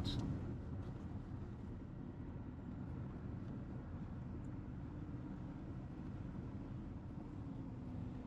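Steady low engine and tyre noise heard inside a car's cabin as it drives along a paved back road, with a faint steady hum coming in near the end.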